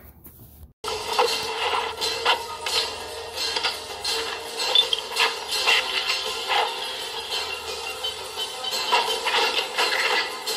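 Action-film soundtrack music with repeated metallic clicks and clanks, played on a TV and picked up off its speaker. It starts abruptly about a second in.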